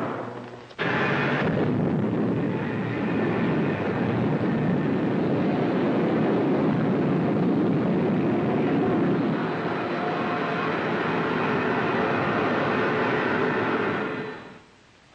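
Rocket-engine sound effect of a spaceship blasting off: a loud, steady rush of noise that cuts in suddenly about a second in, holds, and fades away at the end.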